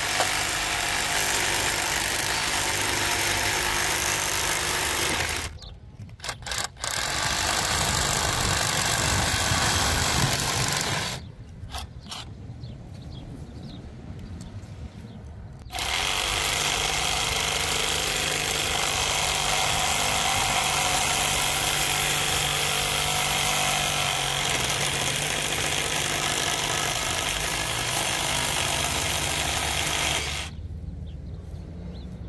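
Compact cordless reciprocating saw cutting through rusted metal rods. It cuts in three long runs, about five seconds, then about four, then a steady stretch from about sixteen seconds on, with pauses between.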